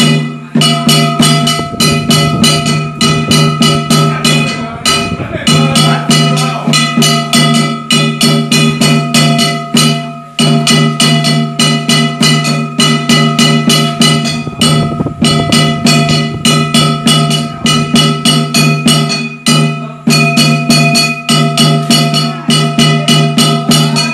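Ritual percussion for a Dao ceremonial dance: drum and metal percussion struck in a fast, even beat, about four to five strikes a second, with ringing metallic tones hanging over the beat. The beat breaks off briefly about ten seconds in.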